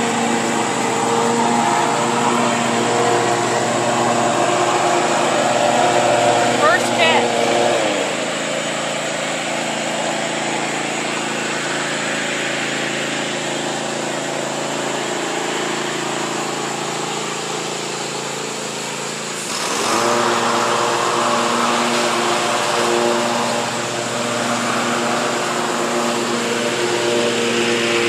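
Lawn mower engine running steadily with a constant hum. It drops in level about eight seconds in and comes back up near twenty seconds.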